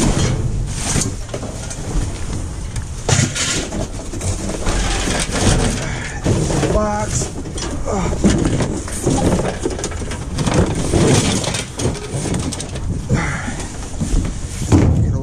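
Trash being rummaged through in a dumpster: cardboard boxes and plastic bags rustling and scraping, with repeated knocks and clatter as items are pulled out and moved.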